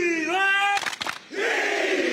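Football team huddled and shouting: one long, drawn-out yell that dips and then rises in pitch, followed about a second in by a roar of cheering voices.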